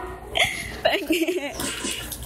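Short wordless voice sounds: a few brief, gasp-like utterances and one longer wavering vocal sound, with no clear words.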